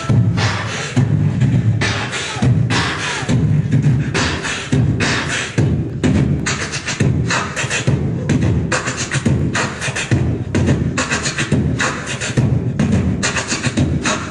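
Human beatboxing into a microphone: a steady, regular beat of mouth-made bass-drum thuds and sharp snare-like hits.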